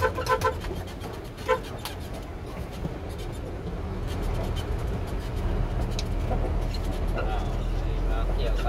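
Truck engine running steadily under the cab while driving, heard from inside the cab, with a few short electronic beeps in the first second and a half.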